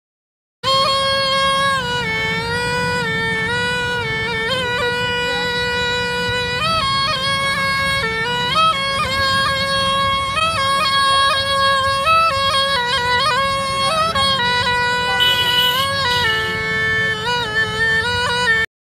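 Pungi (been), the snake charmer's gourd reed pipe, playing a melody that mostly holds one note with quick turns up and down, over a steady low drone. It starts about half a second in.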